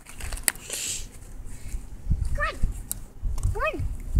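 Two short, high-pitched vocal calls, one falling in pitch about two seconds in and one rising near the end, over low rumbling handling noise.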